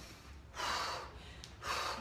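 A woman breathing hard, with two loud breaths, one about half a second in and one near the end, winded from a set of dumbbell swings.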